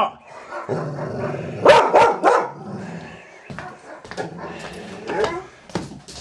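Dog barking: three quick barks about two seconds in and another about five seconds in.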